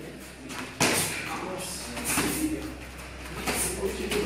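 A single sharp impact about a second in, a strike landing during Muay Thai sparring, followed by faint voices in the hall.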